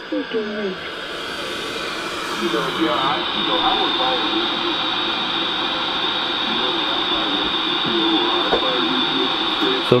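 Single-sideband ham voice traffic on the 80 m band coming out of a Realistic Patrolman-9 portable AM radio's speaker over steady static hiss. A 455 kHz carrier from a bench signal generator, injected at the antenna lead, serves as a beat frequency oscillator, so the sideband voices are demodulated instead of squawking.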